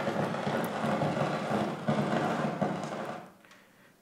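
Cassini's Radio and Plasma Wave Science (RPWS) antenna recording turned into sound and played over loudspeakers: a dense crackling hiss of little pings, each one a tiny ring dust particle hitting the spacecraft on a ring-grazing orbit past Saturn's rings. It stops about three seconds in.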